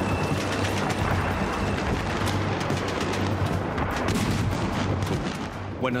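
Battle sound effects of gunfire: scattered shots and rapid bursts of automatic fire over a steady low rumble.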